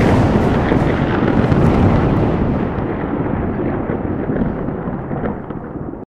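An explosion-like boom used as an intro sound effect. It hits loud at the start, then a rumbling tail slowly fades over about six seconds and cuts off suddenly at the end.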